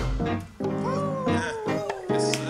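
A live band holds a ringing chord after a loud drum and cymbal hit at the start. Over it an electric guitar plays long bent, sliding notes that swoop up and fall away in pitch.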